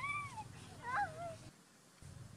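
A baby macaque giving two high-pitched cries: the first arches up and falls away, and the second, about a second in, wavers up and down.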